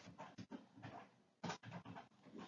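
Near silence with a few faint, short breaths from the speaker, the clearest about one and a half seconds in.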